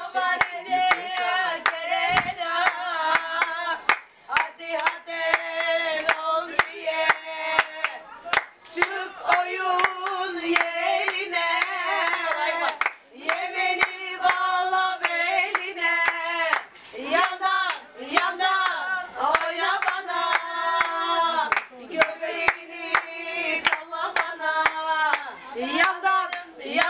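A high voice singing a folk song in phrases of a few seconds, to steady rhythmic hand-clapping.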